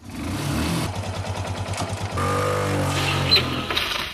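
Motorcycle engine running as the bike approaches. It gets louder from about two seconds in, with the pitch wavering up and down. A brief sharp high sound comes just after three seconds.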